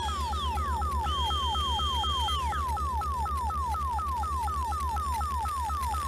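Electronic robot sound effect: a rapid falling blip repeated about four or five times a second over a low pulsing hum. A higher steady beep is held for about a second and a half, starting a second in, and then glides down.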